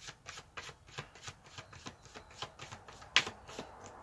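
Tarot cards being handled and shuffled: a quiet, quick run of soft clicks, with one sharper snap about three seconds in.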